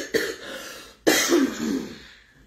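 A woman coughing into her hand: a first cough right at the start and a second, louder burst of coughing about a second in.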